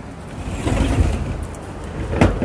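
A wicker armchair being dragged a short way across wooden decking: a low scraping rumble that swells about half a second in and lasts around a second.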